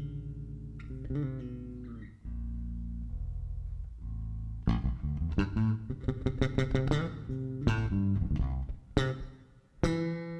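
Electric bass guitar playing a song's opening: low sustained notes, then from about halfway a run of quick, sharply plucked notes.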